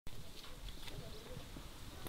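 Faint outdoor ambience: a low rumble with distant voices and a couple of light taps.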